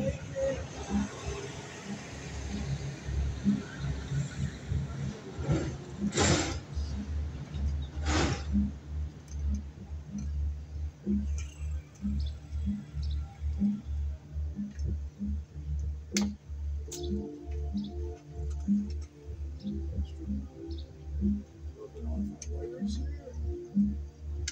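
Background music from a radio, with a steady bass beat and a melody coming in partway through. Three short, sharp noises stand out over it, about six, eight and sixteen seconds in.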